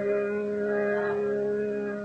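Harmonium holding one steady drone note in a ghazal accompaniment, with no singing over it.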